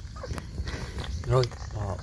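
Wooden spatula stirring an eel stir-fry in a steel basin over a wood fire, with faint scraping and crackling clicks, then a short spoken word near the end.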